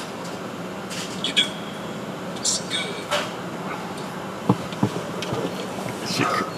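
A steady low hum inside a stopped car, with faint voices, a few light clicks and two sharper knocks about four and a half seconds in.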